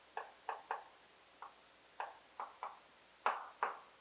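Chalk writing on a chalkboard: a string of quick, irregular taps and short strokes as the letters are put down, with two longer scrapes a little past three seconds in.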